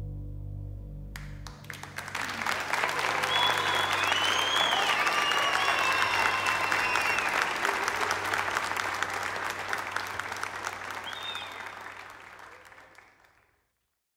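The final chord of a jazz quartet (grand piano and bass) rings out for about a second and a half. Then audience applause with a few whistles starts, swells to a peak and fades away near the end.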